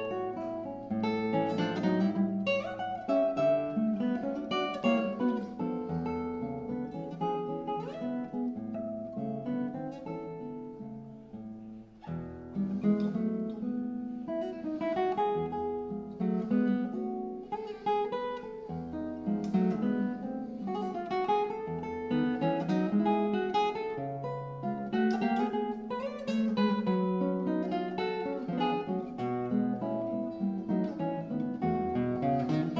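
Solo classical guitar playing: plucked chords and broken arpeggios over held bass notes. The playing thins and softens briefly about twelve seconds in, then picks up again.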